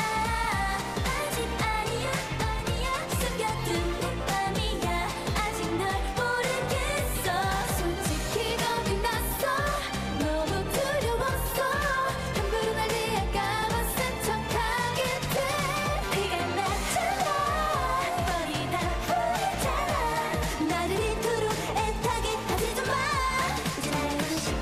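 K-pop song sung by a girl group's female voices over a steady dance-pop beat.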